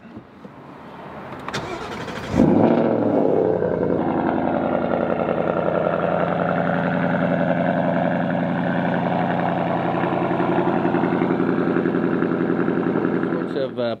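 Ford Mustang GT's 5.0-litre V8 cold-started about two and a half seconds in: it catches with a loud flare of revs, then settles into a steady idle.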